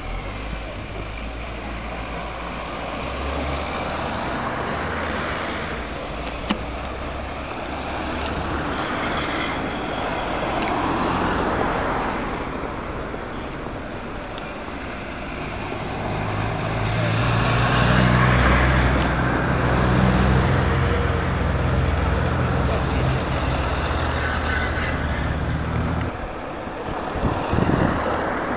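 Motor traffic passing: a continuous engine rumble that swells and fades over several seconds as vehicles go by, loudest in the second half.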